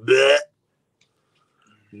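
A man's short voiced exclamation, about half a second long and rising in pitch, followed by silence.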